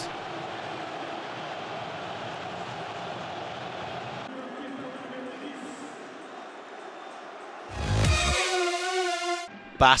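Stadium crowd noise, a steady din of many voices, stepping down slightly about four seconds in. Near the end a sudden loud musical transition sting comes in with a low thump and a wavering, pitched tone, and stops shortly before the end.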